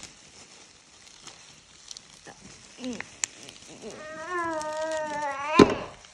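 Small metal scissors making faint snipping clicks as they cut through the dry, papery silk layers of a cecropia moth cocoon. About four seconds in, a long held voiced 'ooh'-like sound lasts about a second and a half and ends in a sharp crackle.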